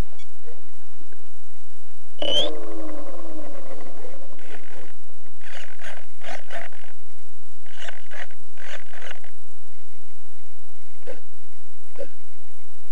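Electric motor and propeller of a Fun Cub RC plane, heard through its onboard camera's microphone. About two seconds in, a quick whine rises and then drops away as the motor spins down. Several short bursts follow over the next few seconds.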